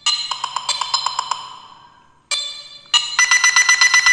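Smartphone ringtone for an incoming call: a melody of short, quick pitched notes, its phrase starting over a little past two seconds in.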